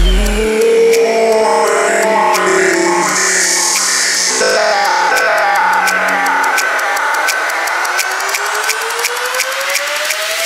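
Electronic bass-music breakdown: the deep bass cuts out about half a second in, leaving a synth melody in stepped notes over fast ticking percussion, and a rising synth sweep builds over the last few seconds toward the drop.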